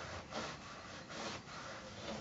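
Small travel iron sliding over a cotton patchwork piece on a padded pressing mat, a faint rubbing sound in a few soft strokes as the seam is pressed.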